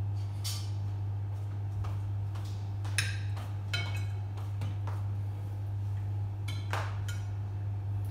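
Spoons and serving utensils clinking against plates, bowls and pots in scattered short knocks during a meal, over a steady low hum.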